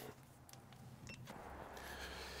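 Near silence: faint background noise with a couple of soft clicks.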